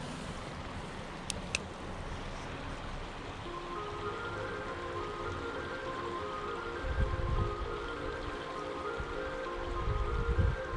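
Creek water running with wind on the microphone, and two sharp clicks about a second and a half in. Background music with a simple melody comes in a few seconds in; low wind gusts buffet the microphone around two-thirds of the way through and again near the end.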